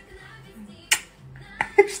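A single sharp click about a second in, with softer clicks near the end, over faint background music.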